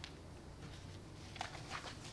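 Quiet room tone with a steady low hum, and a few faint soft clicks near the end.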